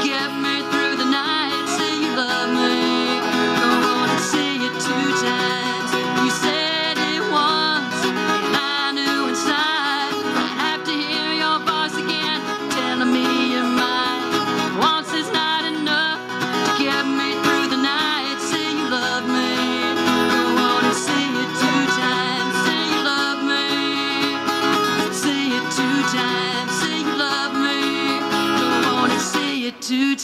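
A solo country song performed live: an acoustic guitar played along with a woman singing into a microphone.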